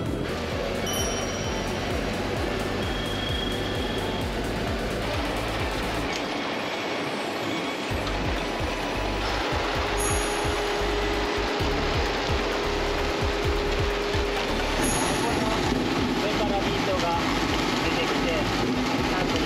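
Tractor and beet-harvester machinery running in the field, a steady engine and machine rumble, with background music laid over it. The sound changes abruptly about 6, 10 and 15 seconds in.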